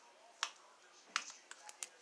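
A few short, sharp plastic clicks: a louder one about half a second in, then several lighter ones, as a small toy makeup container is worked open.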